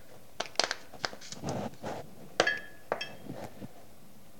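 A run of sharp clicks and crackles from a small plastic capsule being handled and twisted over a stainless-steel pot, with a loud ringing metallic clink about two and a half seconds in and a lighter one just after.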